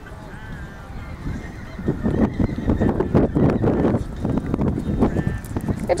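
A horse galloping on an arena's dirt surface: hoofbeats that grow louder from about two seconds in as it comes closer.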